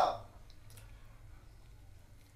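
A spoken word trails off at the very start, then a quiet room with two faint, brief clicks, about half a second and three-quarters of a second in.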